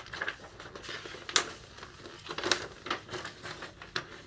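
Paper rustling and crinkling as a large folded poster insert from a vinyl record is handled and opened out, with sharp crackles about a second and a half in and again about halfway through.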